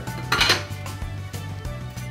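A brief metallic clatter about half a second in, as the impinger's stainless steel cover strip is set down on a wooden floor, over steady background music.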